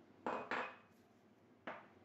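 Three short handling noises of kitchen utensils and containers on a wooden worktop: two close together in the first half-second, then one more about a second later, each sharp at the start and quickly fading.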